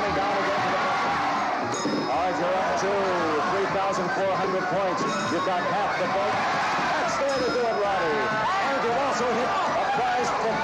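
Giant stage pinball machine in play: the marble strikes bumpers and flippers with irregular sharp knocks and short bell-like rings, each hit scoring points. Many excited voices shout and cheer over it.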